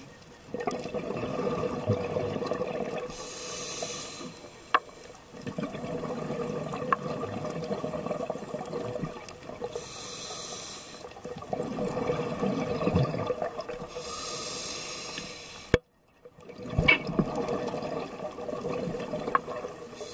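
Scuba diver breathing through a regulator, heard through the camera housing underwater. Exhaled air bubbles out in several bursts of a few seconds each, with the hiss of an inhalation between them, about one breath every five seconds. A few sharp clicks are heard as well.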